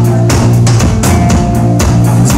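Indie rock band playing live: drum kit with a steady beat of bass drum and cymbal hits under electric guitars, an instrumental passage without vocals.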